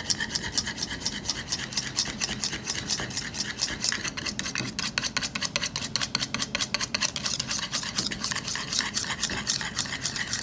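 Wire balloon whisk beating an oil dressing in a bowl, its wires scraping the bowl in rapid, steady, rhythmic strokes. The dressing is emulsifying and thickening like a mayonnaise.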